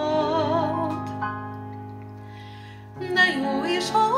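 A woman singing a slow song with wide vibrato over a held instrumental accompaniment. Her sung line ends about a second in, the accompanying chord fades away, and she starts singing again near the end.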